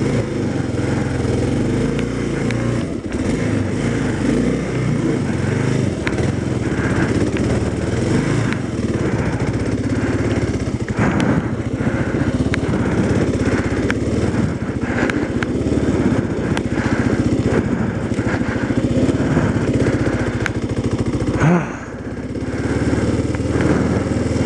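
Motorcycle engine running steadily under way. The engine note drops briefly near the end and then builds back up.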